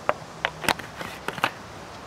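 A handful of short, separate clicks and knocks: a plastic jug being handled and set down on a table.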